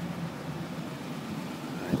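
Ford Expedition's 5.4-liter V8 idling: a low steady hum, with a higher droning note in it that fades out shortly after the start.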